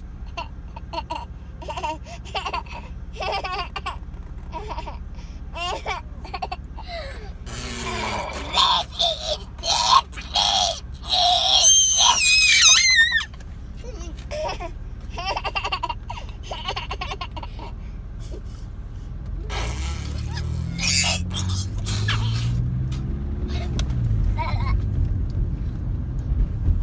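A young child laughing and making short playful vocal noises, with a loud, high squeal about halfway through, over the steady low rumble of a car cabin. A low engine note rises near the end as the car speeds up.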